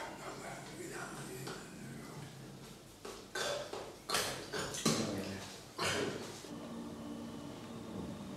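A man's wordless voice sounds made while signing: a low hum, then about four short, breathy bursts in the middle, then a low hum again.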